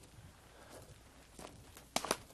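Slow footsteps walking, a few separate faint steps with a louder one right at the end.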